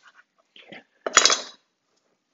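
A chef's knife knocks sharply on a wooden cutting board about a second in, followed by a short scraping crunch as it cuts a crusty baguette. Fainter small taps come just before.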